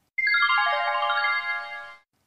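Short musical transition sting: a quick run of chime-like notes falling in pitch, each note left ringing so they pile up, then fading out together near the end.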